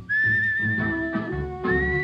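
Solo whistling on a 1938 swing-era dance-band fox-trot record: a clear whistled melody holds one high note for over a second, then slides up to a higher note. Under it runs a light plucked rhythm accompaniment.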